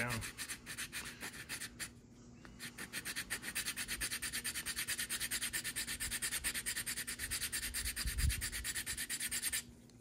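Coarse sandpaper rubbed in quick back-and-forth strokes over the edge of a plastic model car seat, knocking down a step at the seam. There is a short run of strokes, a brief pause about two seconds in, then a long even run of several strokes a second that stops suddenly near the end.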